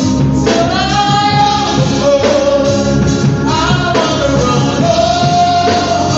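Live gospel praise song: a small group of singers with band accompaniment, singing long held notes that slide from one pitch to the next.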